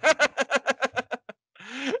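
A man laughing: a quick run of about a dozen short "ha" pulses that fade over just over a second, then a breathy rising sound just before talk resumes.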